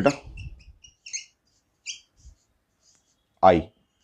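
Felt-tip marker squeaking on a whiteboard while writing: a few short, high-pitched squeaks, most of them between half a second and two seconds in.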